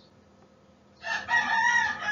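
Near silence, then about a second in a rooster starts crowing: one long, drawn-out call that carries on past the end.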